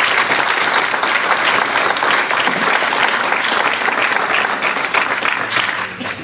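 Audience applauding steadily, then fading out near the end.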